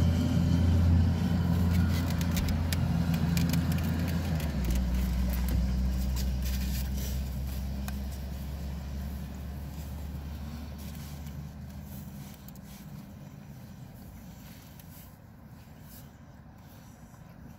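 A motor vehicle's engine running close by: a low, steady hum that drops in pitch about four and a half seconds in, then fades away over the next several seconds. Faint light clicks and rustles sit on top.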